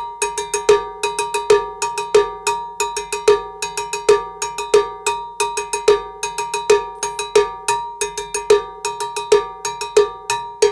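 Drum-kit cowbell played with a stick in the mambo bell pattern, a steady repeating rhythm with a strongly accented stroke about every 0.8 seconds. Strokes on the open end and the closed end give different ringing sounds.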